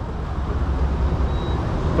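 Gasoline pump nozzle dispensing fuel into a car's filler neck: a steady rush over a low rumble.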